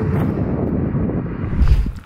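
Wind buffeting the microphone: a loud, uneven low rush with no clear tone, swelling briefly near the end.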